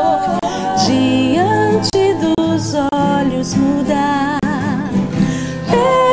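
A song with a singer's voice holding and bending notes over acoustic guitar.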